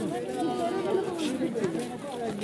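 Several people talking at once: crowd chatter, with no words standing out.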